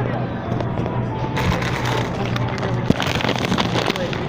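Crackling, rustling handling noise close to the phone's microphone, as of plastic packaging being handled, starting about a second and a half in and stopping just before the end, over a steady low hum.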